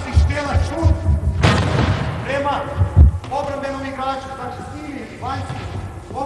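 Voices talking and calling in a large sports hall, with dull thuds of a handball and feet on the court floor; the loudest thud comes about three seconds in, and a short noisy burst about a second and a half in.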